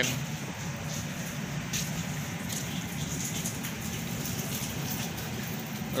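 Steady low drone of a ship's machinery under a continuous wash of wind and sea noise.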